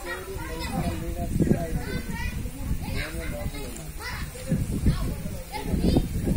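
Children's voices chattering and calling out in a group, with a steady low rumble underneath.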